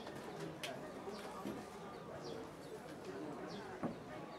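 Small birds chirping in short, high, falling notes every half second or so, with cooing and a low murmur of voices underneath. A single sharp knock comes just before the end.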